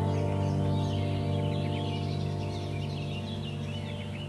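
Soft ambient background music of long held tones, slowly fading down, with birds chirping over it.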